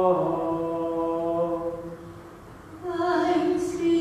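Chant-style singing in a reverberant church: a long held note that dies away about halfway through, then a new sung phrase begins near the end.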